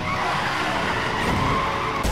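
A car skidding to a stop with its tyres screeching, from a TV drama's soundtrack.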